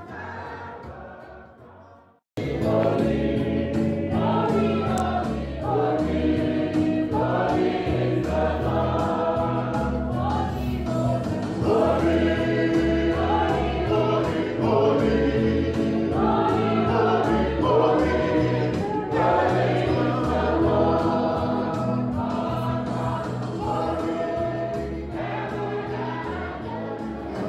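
A choir singing a gospel-style church hymn over instrumental backing with a steady beat. The sound fades out at the start, and after a brief silence the singing comes in abruptly about two seconds in.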